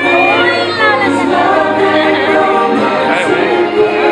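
Christmas parade music played loud over the sound system, with a choir singing over the accompaniment.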